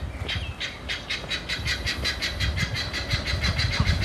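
Helmeted guineafowl calling in a fast, steady run of short, harsh notes.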